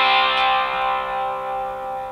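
Telecaster-style electric guitar letting a C power chord (fifth string third fret, fourth and third strings fifth fret) ring out, held and slowly fading, left sounding with no rest.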